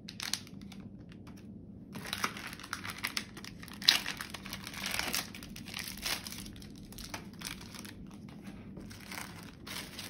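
Paper-and-plastic medical supply packaging crinkling and tearing as peel packs are opened and handled, with many small crackles and one sharp crack about four seconds in. The first two seconds are quieter, with only a few light ticks.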